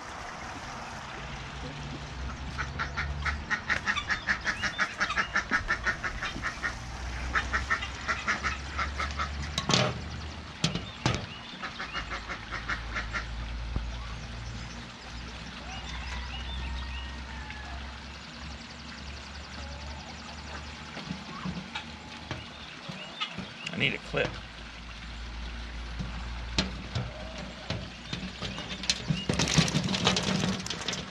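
Ducks quacking in two rapid runs of calls in the first ten seconds, then fainter calling. A few sharp knocks are heard around ten seconds in and again later.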